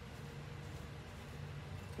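Steady low hum of an electric fan running, with a faint even hiss and no distinct events.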